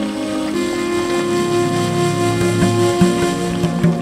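Background music of sustained, layered chords that change about half a second in, with a few soft percussive knocks in the second half.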